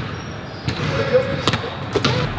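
A basketball bouncing on a gym floor: three separate bounces, under a second apart.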